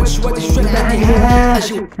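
Moroccan rap track playing, with a deep bass beat and a long held note; the music cuts off shortly before the end.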